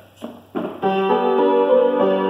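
Upright piano starting to play a simple melody over chords, coming in just under a second in and carrying on steadily. It is the opening of a stepwise melody.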